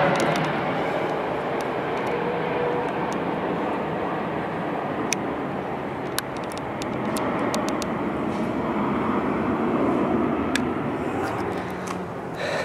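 Twin-engine jet airliner passing low overhead on approach with its landing gear down: a steady engine rush that grows louder about two-thirds of the way through, then eases.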